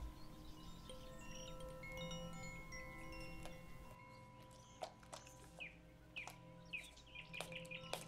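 Faint relaxation music of wind chimes ringing over sustained tones, with short bird-like chirps from about halfway in.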